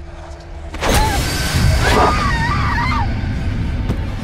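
Sudden loud horror-film stinger about a second in: a hit over a heavy low rumble, then a wavering high wail for about a second, settling back to the low rumble.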